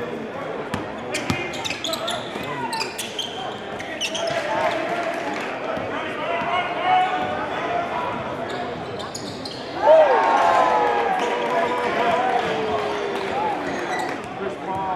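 Basketball being dribbled on a hardwood gym floor amid crowd chatter in a large hall, with the crowd noise rising sharply about ten seconds in.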